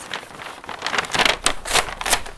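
Brown paper bag rustling and crinkling with several sharp crackles as it is shaken and its paper handles are pulled off.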